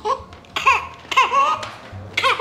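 Newborn baby fussing and crying in a few short, high-pitched cries, the last one longer and wavering. A sign of hunger.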